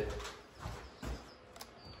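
Handling noise of a camera being picked up and carried: a few soft low thumps and a small click.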